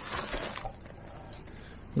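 Snow-covered bramble stems rustling and scraping against legs and clothing. There is a short burst of noise in the first moment, then quieter rustling.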